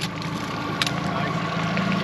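Outboard motor running steadily on the boat, a low even hum, with one short click a little under a second in.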